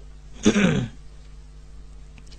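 A man clears his throat once, briefly, into a microphone about half a second in, over a faint steady hum.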